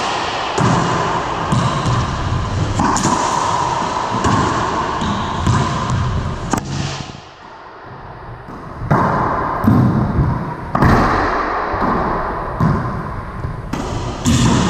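Racquetball rally: repeated sharp smacks of racquet on ball and ball off the walls, each ringing out in the enclosed court. The hits pause briefly about seven seconds in, then resume.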